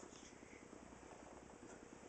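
Near silence: faint, steady room tone in a small room.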